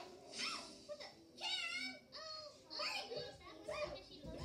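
High-pitched children's voices making playful sounds and chatter with no clear words, rising and falling in pitch.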